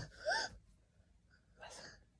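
A short, high-pitched gasping laugh in the first half-second, its pitch rising and falling, then a soft breathy exhale near the end.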